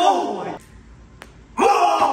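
Men's excited exclamations: a drawn-out shout falling in pitch at the start and another loud shout near the end, with a single sharp tap of a ping-pong ball bouncing on the table about a second in.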